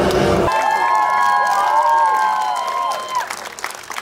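Show music cuts off about half a second in, and an audience cheers with long drawn-out shouts and claps, fading away near the end.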